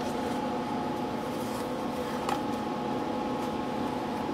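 Steady machine hum and fan whir from the running welder and fan, holding several constant tones, with one faint click a little past the middle.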